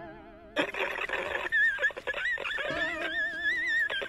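Exaggerated, theatrical crying wail with a fast-wavering pitch. It fades at first, then comes back louder and fuller about half a second in and carries on with short breaks.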